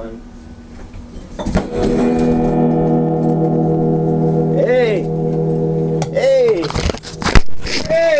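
A held musical chord of several steady tones, organ-like, sounds for about four seconds, with two short shouted calls over it. A sharp knock comes near the end.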